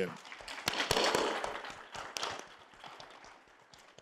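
Audience applauding: a burst of clapping that thins out and fades away over about three seconds.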